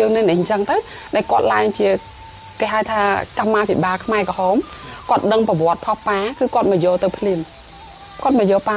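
A person talking steadily, phrase after phrase, over a constant high-pitched hiss.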